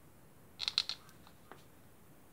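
A quick run of four or five sharp clicks about half a second in, then one faint click, as a CRT television is switched on from standby with its remote.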